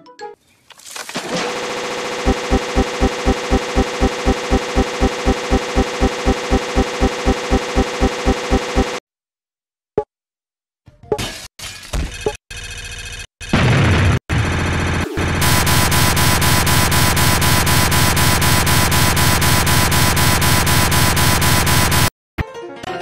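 Harsh looping buzz of a crashed computer's audio buffer repeating: a dense tone pulsing about four times a second that cuts out suddenly, then choppy glitching fragments, then another steady stuttering buzz.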